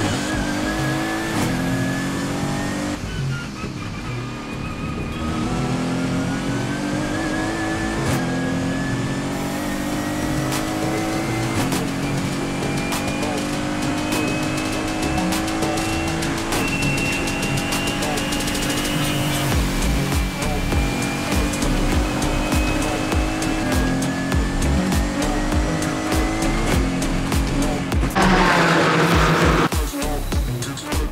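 Mercedes-AMG GT4's twin-turbo V8 under full throttle, heard from inside the cabin. The revs climb steadily and drop back at each upshift, several times, as the car accelerates up through the gears.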